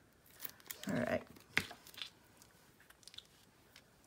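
Stiff cardstock being handled and pressed down onto a card base: a few sharp clicks and crisp paper crackles in the first two seconds, with a short murmur of a voice about a second in.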